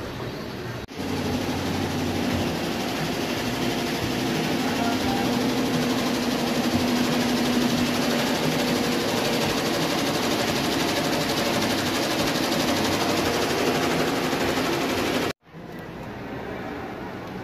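Four-head Azura embroidery machine running, its needles stitching steadily. It starts abruptly about a second in and cuts off shortly before the end.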